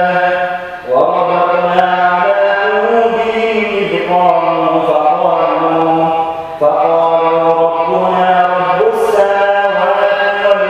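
A man reciting the Quran in a melodic chant, holding long, slowly wavering notes. He breaks briefly for breath about a second in and again past the middle.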